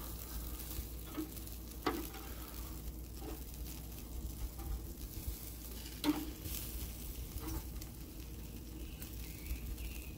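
Bacon-wrapped jalapeno poppers sizzling on a charcoal grill grate while steel tongs turn them over, the tongs clicking against the grate a few times, loudest about two seconds and six seconds in.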